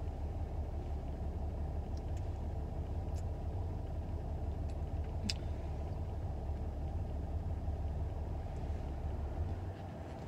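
A car's engine idling, a steady low rumble heard from inside the parked car's cabin, with a few faint light clicks.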